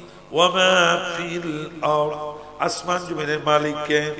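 A man's voice chanting part of a sermon in a melodic, sing-song style, with long held notes that slide up and down; it starts after a brief pause.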